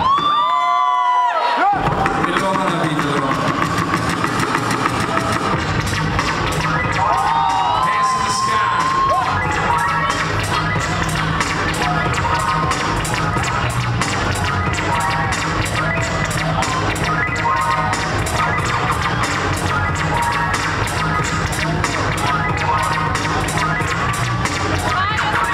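Hip-hop instrumental beat played by a DJ through a venue PA, with a crowd cheering and shouting over it. For the first second and a half the bass is cut out under a high sound that rises and falls, then the full beat drops in and runs steadily.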